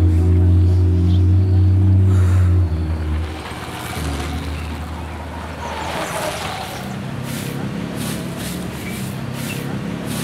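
A loud low steady hum for the first two and a half seconds, then a motorcycle passing close by, loudest about six seconds in. Near the end, a stiff broom sweeping bare earth in regular strokes, about two a second.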